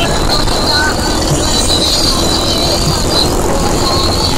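Several motorcycle engines running steadily in slow street traffic, a continuous low rumble, with a voice heard briefly.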